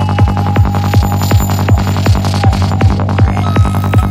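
Psytrance music: a steady, fast four-on-the-floor kick drum over a dense rolling bassline, with a held synth note early on and a rising synth sweep near the end.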